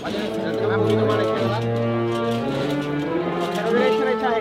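Municipal wind band playing a slow Holy Week processional march, with long held low notes under the melody.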